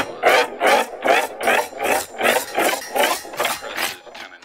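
A looped rasping noise in an electronic music track: even strokes at about two and a half a second, like a file or saw drawn back and forth.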